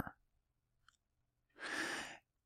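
Near silence, then about one and a half seconds in a man's audible breath, lasting about half a second.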